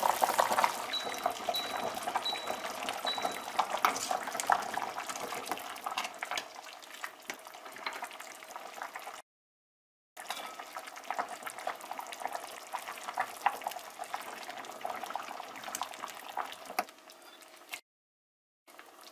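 Seaweed soup boiling hard in a stainless steel pot: a steady rush of bubbling with many quick crackling pops. The sound breaks off for about a second in the middle, then the boil carries on.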